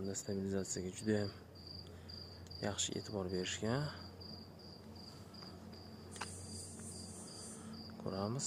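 A cricket chirping steadily, a train of short high chirps at about three a second, with a person's voice briefly near the start and again about three seconds in.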